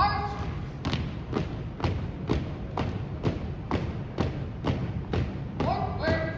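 A squad of drill cadets marching in step on a hardwood gym floor, their shoes striking together about twice a second in a steady cadence.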